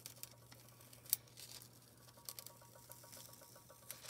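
Heat-transfer foil sheets being peeled off foiled cardstock and handled: faint crinkling and small crackles, with one sharper crackle about a second in.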